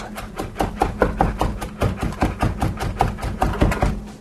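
Knife chopping cilantro into small pieces on a cutting board: quick, even strokes about five a second.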